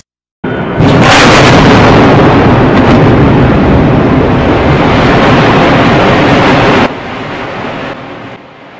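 Explosion sound effect, very loud: a dense wash of noise starts about half a second in, jumps to full level a second in and holds for about six seconds, then cuts down abruptly to a quieter tail near the end.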